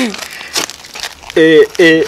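A man laughing heartily: breathy, noisy bursts at first, then two loud voiced laughs near the end.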